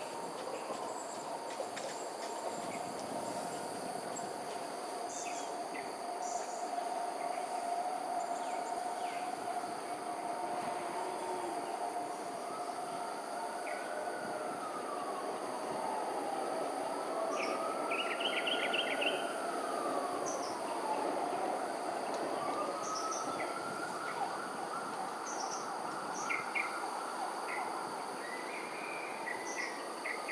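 Outdoor ambience of a steady high-pitched insect drone with scattered short bird chirps. Under it, a distant siren-like wail slowly rises and falls in pitch, again and again every few seconds.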